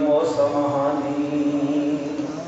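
A man chanting one long held note into a microphone, in the sung recitation of a Muharram majlis remembering Imam Hussain.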